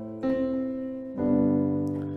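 Piano sound from a stage keyboard playing plain sustained triads with the sustain pedal: an A minor chord struck just after the start, then a G chord about a second later, each ringing and fading.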